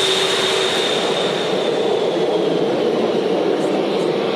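Aircraft passing overhead: a steady engine noise with a high whine that slowly fades.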